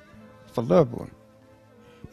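A man's voice saying one short word, over faint sustained background music notes.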